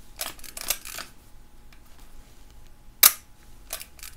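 Leica M3 cloth focal-plane shutter being cycled: the film advance lever is wound with a short run of ratcheting strokes in the first second, then the shutter fires with a single crisp click about three seconds in, followed by a lighter click. At this faster speed (1/60 and above) the shutter fires without the slow-speed governor's buzz.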